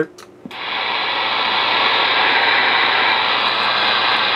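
Steady static hiss from an RCI-2980WX 11-meter CB radio's speaker between transmissions. It comes on suddenly about half a second in and cuts off near the end.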